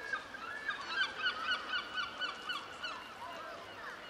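A bird calling a rapid series of short, honking notes, about four a second, fading out about three seconds in, over a steady background hiss.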